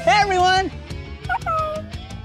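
A cartoon puppy's high, voiced bark, one long call and then a couple of shorter ones, over light music with a slow rising glide.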